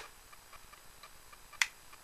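Trigger of a Tokyo Marui Smith & Wesson M&P 9 gas blowback airsoft pistol being let forward, giving one slight click of trigger reset about one and a half seconds in, after a few fainter ticks. The reset click is slight and the trigger spongy, with no reset that can be felt.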